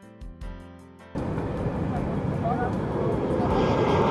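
Soft instrumental music that breaks off about a second in. It gives way to the steady engine noise of a jet airliner flying low overhead, growing louder toward the end.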